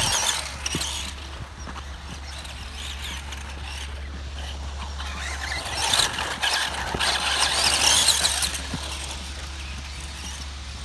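Tamiya Super Storm Dragon electric RC off-road buggy, run on a Sport-Tuned brushed motor, driving over a dirt track. Its tyres scrabble through loose dirt along with drivetrain whir. It is loudest as it passes close at the start and again from about six to eight and a half seconds in.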